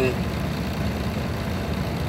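Diesel truck engine running steadily, heard inside the cab as a low, even rumble; the engine is running again after its gelled fuel lines were thawed.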